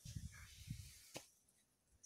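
Near silence: a faint hiss with low rumbles, a single click just past a second in, then dead silence.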